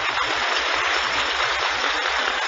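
Audience applauding, dense and steady.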